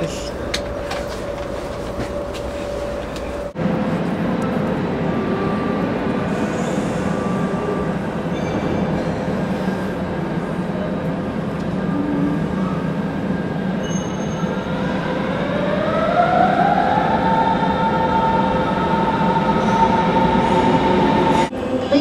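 Train noise throughout. First comes the steady ride noise inside a moving train carriage; after a cut about three and a half seconds in, a train runs in a station hall with a steady rumble. About fifteen seconds in, its electric motor whine rises in pitch and then holds steady.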